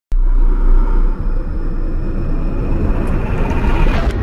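Cinematic logo-intro sound effect: a loud, deep rumble with a rising whoosh that builds toward a boom-like hit just as the logo appears.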